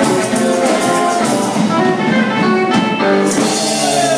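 Live rockabilly band playing an instrumental passage, the electric guitar carrying the lead over drum kit and upright bass.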